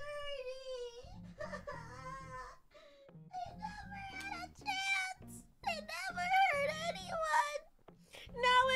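A woman wailing and whimpering in mock dismay, a string of four or so drawn-out cries that waver up and down in pitch.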